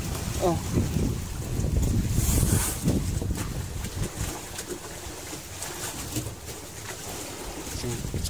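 Low steady rumble of a fishing boat under way, with wind buffeting the microphone and a few light knocks on the deck. A short exclamation comes right at the start.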